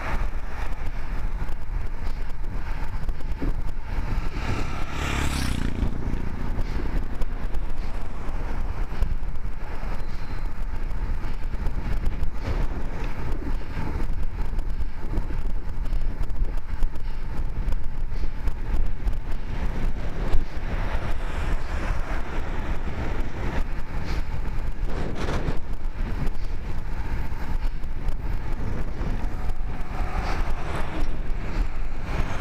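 Steady wind noise rushing over the microphone of a camera on a moving road bike, with road noise underneath. A vehicle sweeps past about five seconds in, the loudest moment.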